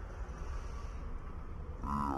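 Steady street noise with a low rumble as a small van drives past close by. A drawn-out voice begins near the end.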